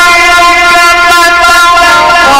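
A man's chanting voice in Quran recitation, amplified through a microphone, holding one long unbroken note on a single pitch.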